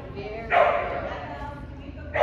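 A dog barking once, sharply, about half a second in, the sound fading over the next second.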